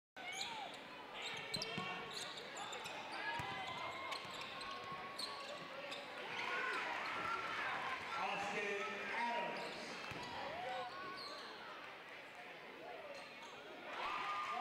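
Live basketball game sound in a gym: a basketball bouncing on the hardwood court with sharp knocks, short high squeaks that slide in pitch, and voices of players and crowd.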